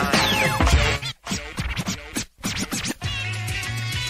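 A hip hop track with turntable scratching. A record is cut back and forth over the drum beat in quick pitch sweeps, then in short choppy strokes that drop out briefly twice. Near the end a steady, held bass note takes over.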